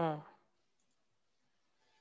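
A computer mouse click, heard with a brief spoken 'uh' at the start; the rest is faint room tone.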